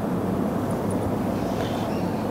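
Steady low background rumble with a faint hum, unchanging throughout.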